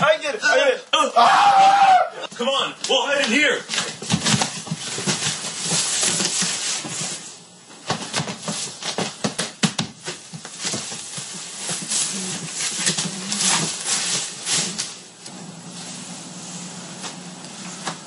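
Loud wordless yelling for the first few seconds, followed by a long stretch of scattered sharp knocks and clatter.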